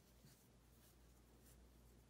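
Near silence, with faint rustling of macramé cord as hands tie a knot.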